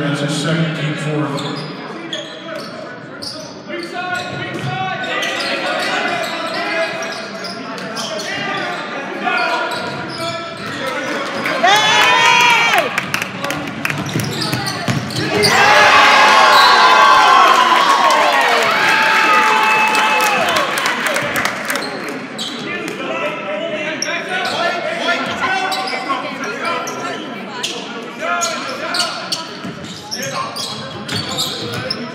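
Basketball game in a large gym: the ball bouncing on the hardwood court, sneakers squeaking, and players and spectators calling out, echoing in the hall. The squeaks come in a cluster about halfway through, the loudest part.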